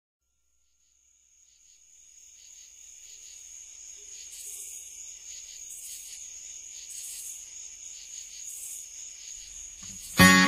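Crickets chirping: a steady high trill with a pulsing rhythm, fading in from silence after about a second, with a louder shimmering insect call swelling in roughly every second and a half.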